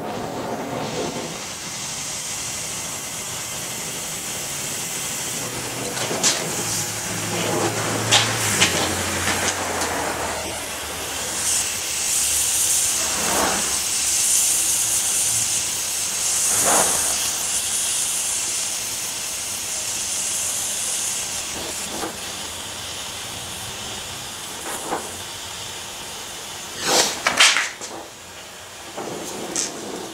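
Oxy-fuel torch flame hissing steadily as it heats a thick steel bar at its bend line. A few sharp metal knocks break in, the loudest near the end.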